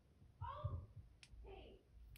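Brief low murmuring from a man, with one faint sharp click about a second in from the tail switch of a small flashlight being pressed.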